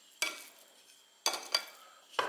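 Cutlery knocking and scraping on a porcelain plate while a piece of soft pâté is cut and lifted: three short strokes, one about a quarter second in and two close together just past the middle.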